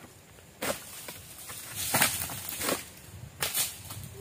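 About four brief rasping, scraping strokes, the loudest about two seconds in: an egrek pole sickle cutting through oil palm frond bases during pruning.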